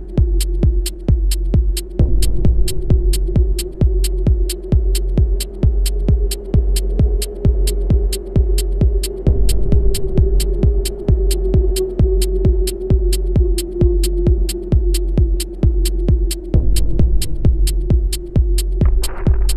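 Minimal techno track: a steady kick-drum beat, about two beats a second, over a sustained droning tone and a constant deep bass.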